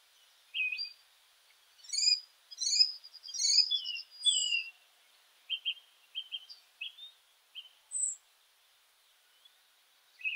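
Birdsong: a run of short chirps, whistled notes and quick sweeping calls, busiest between about two and five seconds in.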